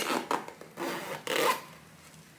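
Zip of a fabric pet-carrier backpack being drawn closed, about three short rasping strokes in the first second and a half.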